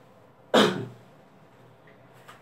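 A man clears his throat once, a short sudden sound about half a second in.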